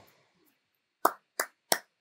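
A person clapping their hands three times, about a third of a second apart, starting about a second in.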